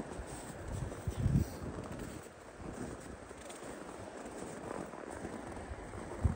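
Steady outdoor background noise, with a cluster of low thumps about a second in.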